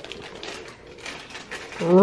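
Faint, scattered clicks and crinkles of a small keychain toy being handled in its plastic wrapper.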